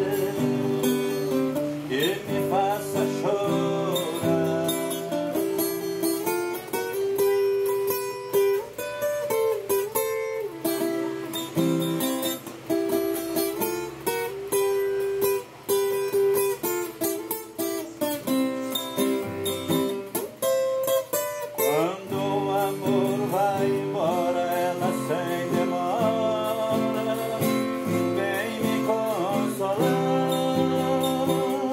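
Guitar music: plucked and strummed acoustic string instruments playing a continuous tune.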